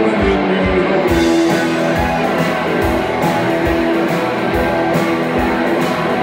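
Live blues band playing an instrumental passage between sung lines: electric guitars with a drum kit, cymbal strokes keeping a steady beat from about a second in.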